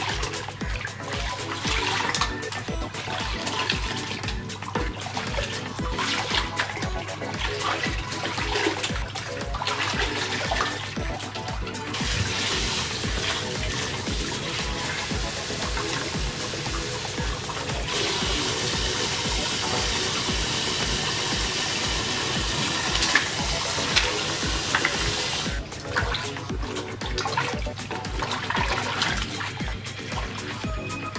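Water running from a salon shampoo-bowl tap into a basin of water for about thirteen seconds in the middle, with water splashing and sloshing around it as hair is worked in the basin of warm water and color-remover powder. Background music with a steady beat plays throughout.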